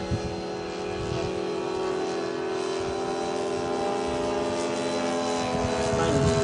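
A 70 mm ten-blade electric ducted fan on a radio-controlled delta wing whining steadily in flight. It grows gradually louder.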